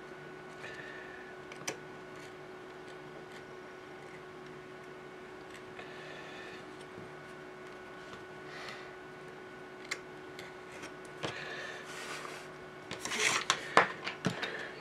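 Faint, intermittent scraping of a hobby knife blade drawn along a steel ruler through cloth on a cutting mat, with a few light clicks. A louder, brief scrape near the end as the ruler is shifted.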